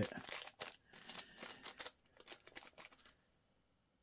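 Small plastic zip-lock bag crinkling and rustling as fingers open it and pull out a tiny resin figure. A faint run of crackles that stops about three seconds in.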